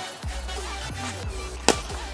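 Background music, with one sharp crack near the end as a plastic bat hits a Blitzball for a line drive.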